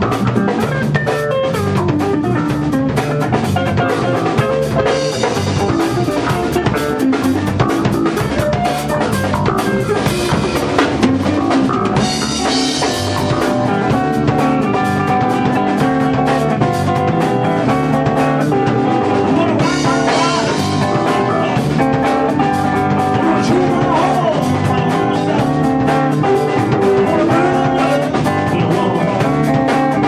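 Rock band playing an instrumental passage: electric guitar riffing over a drum kit beat, with cymbal swells about twelve and twenty seconds in.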